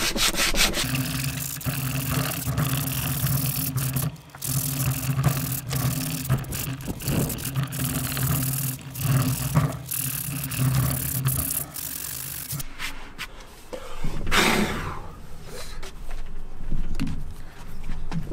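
Fine-grit sandpaper rubbed by hand over the weathered wooden top of a cable spool, close around steel bolt washers: a rough, scratchy rubbing in short back-and-forth strokes that stops about twelve seconds in. A low steady hum runs under the rubbing and stops with it.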